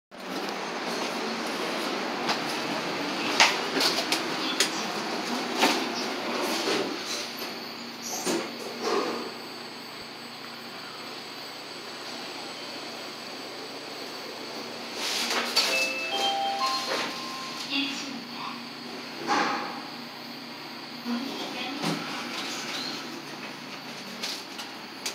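A Jiam Tech elevator being called and ridden. Steady background noise runs with sharp clicks and knocks in the first seven seconds, then quietens. About fifteen seconds in, a short electronic chime of a few steady notes sounds, with the hum of the moving car beneath.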